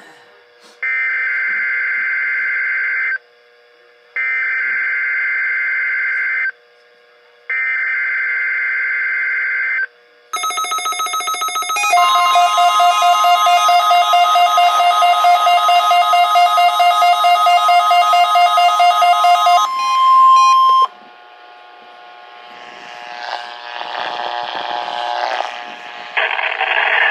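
NOAA Weather Radio alert coming through several weather radios at once. First come three two-second bursts of the buzzing digital SAME header. Then comes the steady 1050 Hz warning alarm tone, with the radios' own rapid alert beeps sounding over it for about ten seconds; it cuts off sharply about 21 seconds in, leaving faint rustling.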